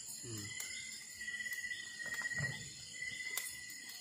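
A steady, high, thin trill of night insects runs throughout, with a few sharp crackles from the wood fire and faint low voices murmuring about two seconds in.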